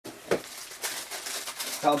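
A single soft knock about a third of a second in, followed by faint, irregular rustling and clicking, like handling noise in a small room.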